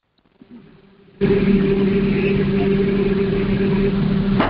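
A steady mechanical drone, a low hum with its octave over a noisy rush, that starts suddenly about a second in and holds at an even level.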